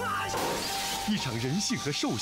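Glass shattering with a sudden crash about a third of a second in, over background music.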